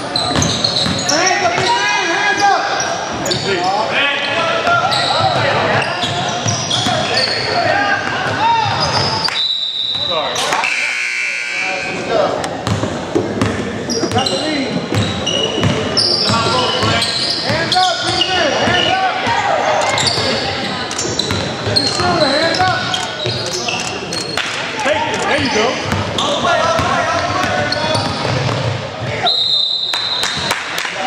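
Basketball game in a gym: players' and spectators' voices echoing in the hall, with a ball bouncing on the hardwood court. A referee's whistle sounds briefly about ten seconds in and again near the end.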